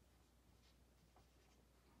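Near silence, with a few faint strokes of a marker pen writing on a whiteboard.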